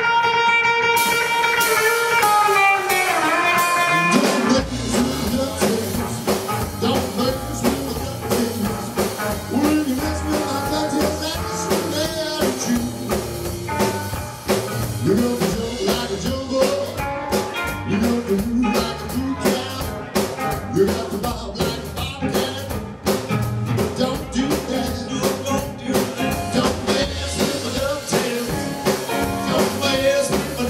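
Live roots band playing a bluesy number: electric guitar alone at first, with a falling run, then upright bass and drum kit come in together about four and a half seconds in and the full band plays on.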